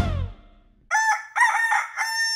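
A rooster crowing cock-a-doodle-doo. About a second in it gives a few short broken notes, then one long held final note. At the very start the intro music ends on a final chord that quickly dies away.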